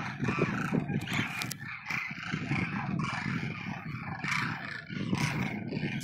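A huge flock of demoiselle cranes calling together: a continuous din of many overlapping calls.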